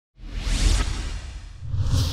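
Whoosh sound effects over low music: one swells in just after the start, and a second rises toward the end.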